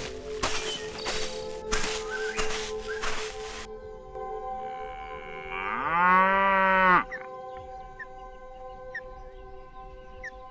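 A cow mooing once: a single long call that rises in pitch, then holds and cuts off sharply about seven seconds in. Before it comes a few seconds of rustling, crunching noise. Steady background music tones run beneath throughout.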